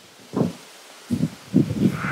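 Handling noise on a corded handheld microphone: a soft low thump about a third of a second in, then a run of irregular low thumps and rustles from about halfway through as she shifts her grip and turns.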